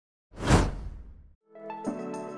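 A whoosh sound effect for an animated logo intro, a single sweep lasting about a second that fades out. About a second and a half in, background music begins with sustained keyboard chords.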